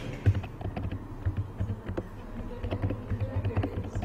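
Typing on a computer keyboard: a quick run of irregular key clicks with dull thumps under them.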